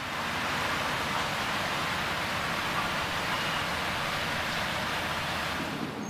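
Steady distant city traffic ambience, an even wash of noise with a low rumble beneath it, that cuts off near the end.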